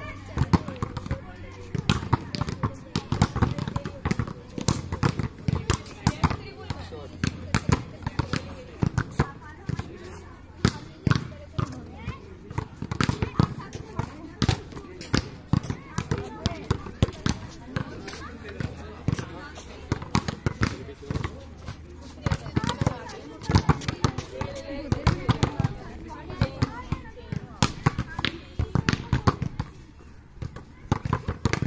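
Volleyballs being struck by hand and bouncing on the hard dirt court: frequent sharp hits and bounces at an irregular pace, with indistinct voices of players underneath.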